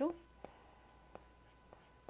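Three light taps on a tablet's touchscreen, spread over about a second and a half, as the brush list is scrolled through.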